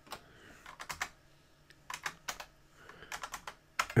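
Computer keyboard keys clicking in short, irregular groups of keystrokes.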